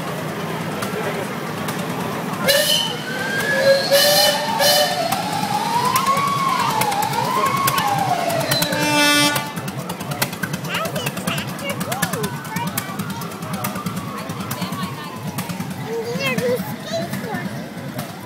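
Semi-truck air horn blowing several short blasts in the first half, over the rumble of the truck's diesel engine as it passes hauling a loaded flatbed trailer.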